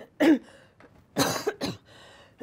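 A woman coughing, three coughs in quick succession, the second the loudest and longest.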